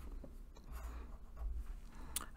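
Felt-tip pen writing on paper: faint, irregular scratching strokes.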